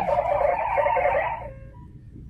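Digital-mode modem audio from FLDigi sent over amateur radio: a dense band of rapidly changing data tones that cuts off about one and a half seconds in.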